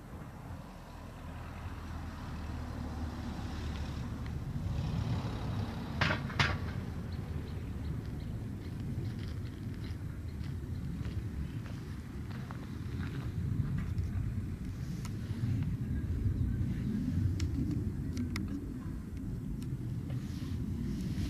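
Low, unsteady outdoor rumble, growing slightly over the first few seconds, with a few short sharp clicks about six seconds in and a couple more later.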